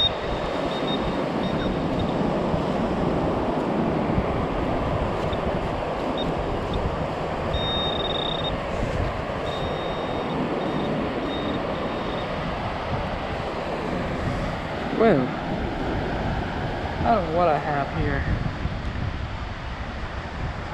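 Handheld metal-detecting pinpointer probing wet sand, giving a high electronic tone in on-off stretches over the first ten seconds or so, longest about eight seconds in. Steady wind and surf noise runs underneath.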